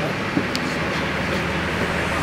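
Steady running of a large coach bus idling, with a small click about half a second in.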